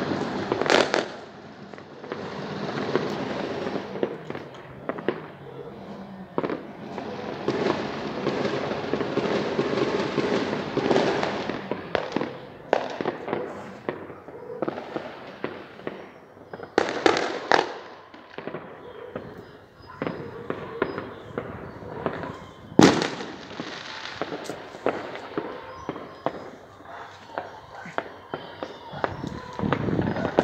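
Many fireworks going off around a town at once: a dense run of pops and crackle, broken by scattered sharper bangs, the sharpest late on.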